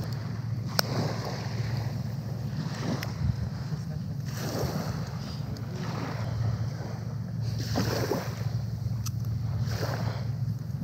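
Small waves washing onto a sandy shore, swelling and fading every few seconds, with wind on the microphone and a low steady hum underneath.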